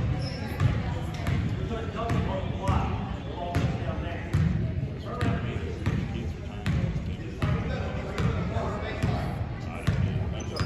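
Basketball dribbled on a hardwood gym floor, a bounce a little more than once a second, with voices of players and spectators around it.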